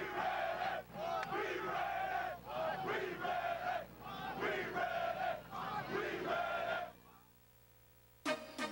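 A group of football players chanting in unison with their helmets raised, about four pairs of drawn-out shouts in a steady rhythm, stopping about seven seconds in.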